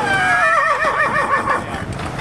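Horse whinnying once: a sharp high onset, then a quavering call that wobbles and falls in pitch for about a second and a half.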